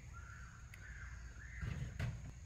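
A bird calls faintly in the distance, drawn-out and wavering, over a low steady background rumble. A short click comes a little under a second in.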